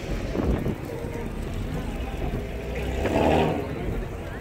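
A car engine running steadily at idle, with voices in the background that swell about three seconds in.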